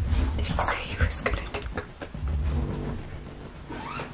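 Two people whispering and stifling laughter, with breathy hushed voices.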